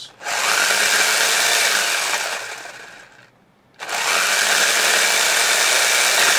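WLtoys 144001 RC buggy's 2845 brushless motor and gear drivetrain, on a 2S LiPo, spinning the wheels in the air: a steady whine with gear noise. It runs twice: the first run winds down over about a second, and after a short gap a second run starts about halfway through.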